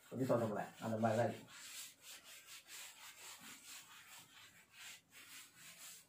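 Cloth wiping chalk off a blackboard: faint, dry rubbing in a series of short back-and-forth strokes.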